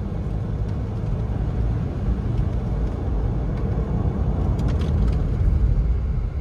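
Inside the cabin of a C8 Corvette driving slowly on a slushy, snow-covered road: a steady low rumble of the engine and tyres.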